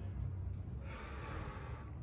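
A man breathing hard under exertion while lifting a pair of dumbbells: one long forceful exhale starting about half a second in and lasting over a second, over a steady low rumble.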